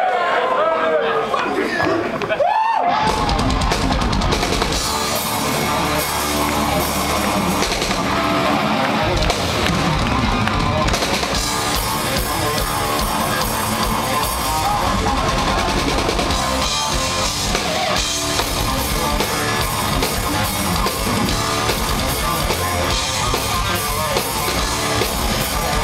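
Live metal band playing loud, with drum kit and distorted electric guitar. It opens with a long voice call that slides in pitch, and the full band crashes in about three seconds in.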